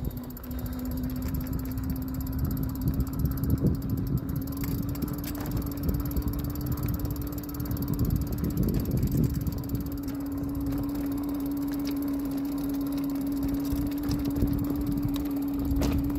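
Electric hub motor of a Juiced Scorpion X e-bike whining steadily under way, its single tone rising slightly in pitch. Beneath it runs a low, uneven rumble of wind and tyre noise.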